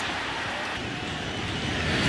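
Steady crowd noise from a baseball stadium full of fans.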